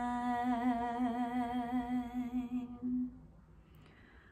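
A woman's voice singing a cappella, holding one long note with a slow, wavering vibrato that fades out about three seconds in.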